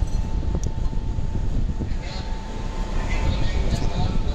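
Busy airport entrance ambience: a steady low rumble of traffic and crowd with a thin steady tone above it. Indistinct voices in the second half.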